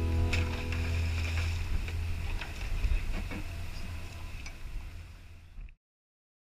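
A boat's engine running with a steady low rumble under a light wash of noise, with occasional light knocks. It fades down and cuts off just before the end.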